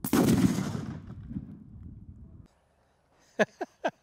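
A Firebird exploding reactive target goes off when hit by an airgun pellet: one loud, sudden boom at the start with a rumbling tail that dies away and cuts off abruptly about two and a half seconds in. A few short sharp clicks follow near the end.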